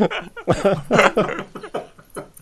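Men laughing, in short repeated bursts of voiced laughter.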